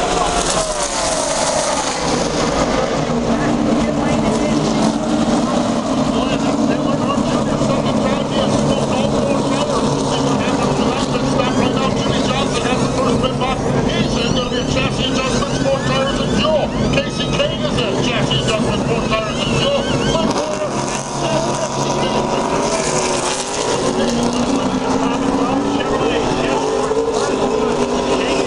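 Many NASCAR stock cars' V8 engines running together through pit stops, a continuous layered drone with pitches that slide as cars pass and pull away.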